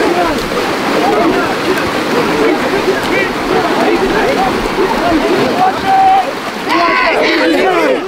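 A large group of karateka shouting together, a dense crowd of overlapping yells, with water splashing as they move through shallow lake water. A few single shouts stand out near the end.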